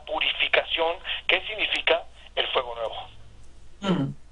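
A person talking in a thin, narrow-band voice like speech heard over a telephone line; the talking stops about three seconds in.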